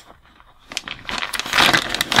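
Clear plastic zip-top bag crinkling and rustling as it is pulled open and rummaged in, starting a little under a second in and growing louder.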